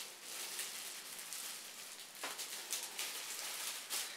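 Small plastic baggie crinkling and rustling as a pin fastened through it is worked loose by hand, with two light clicks, one about halfway through and one at the end.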